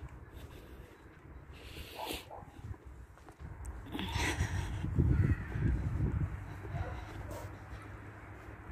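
Wind buffeting the microphone, loudest in the second half, with a few short, harsh crow caws about two and four seconds in.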